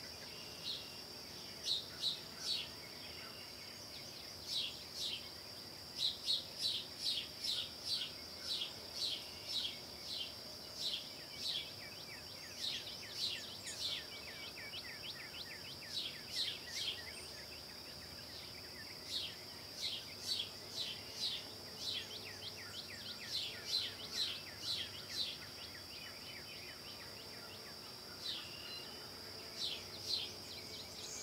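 Woodland ambience: a steady, high-pitched insect drone under repeated short, falling chirps. The chirps come in runs of two or three a second, with short gaps between the runs.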